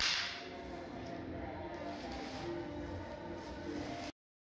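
One short swish of a straw broom across a stone floor at the start, followed by quieter handling of a plastic rubbish bag being gathered up.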